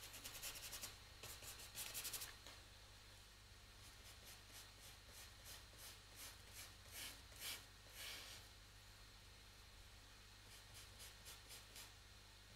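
Faint scratching of a small paintbrush working oil paint on a painting board, in runs of quick short strokes: in the first two seconds, again about seven seconds in, and near the end.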